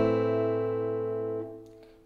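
An A minor chord ringing out on a Cort acoustic guitar after a single strum, fading steadily and dying away about one and a half seconds in.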